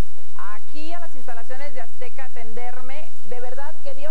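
A woman speaking, with a steady hiss under her voice.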